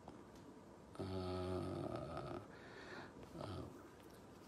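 A man's long, steady hesitation sound "uhh", held about a second and a half, then a shorter, fainter "uh" near the end.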